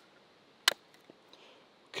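A single sharp click, about two-thirds of a second in, from a break-open 700 Nitro Express double-barrel rifle being handled as it is opened and loaded by hand.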